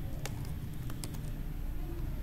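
Computer keyboard typing: a handful of quick keystrokes, bunched in the first second or so, over a steady low hum.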